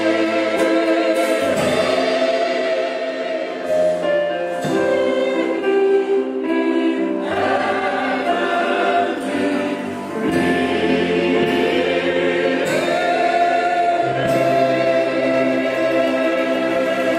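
Large mixed choir singing a gospel arrangement in held chords that change every second or two.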